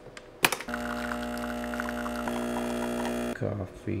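Breville Barista Express espresso machine's vibratory pump running as it pulls an espresso shot: a steady buzzing hum that starts just after a click about half a second in and cuts off after under three seconds.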